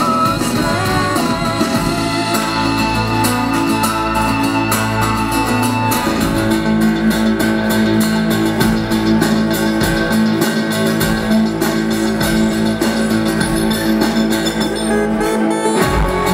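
Live band music with an electric guitar and an acoustic guitar playing together; the chords change about six seconds in.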